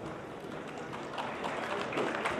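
Audience applauding in a hall, the clapping picking up about a second in.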